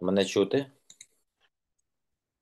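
A short burst of a man's speech over a video call, then two faint clicks about a second in, with dead silence after.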